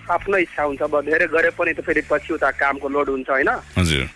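Speech only: a radio host talking continuously in Nepali, with a short burst of noise near the end.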